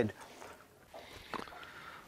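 Faint, soft wet handling sounds and a small click as a flathead is lifted out of a landing net, over quiet background.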